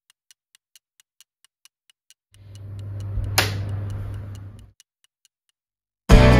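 Fast, even clock-like ticking, about four ticks a second. A low hum swells in a couple of seconds in, with one sharp swish in the middle, and dies away before the end.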